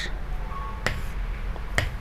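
Two short, sharp clicks about a second apart over a low steady room hum: a stylus tapping on an interactive whiteboard as words are underlined.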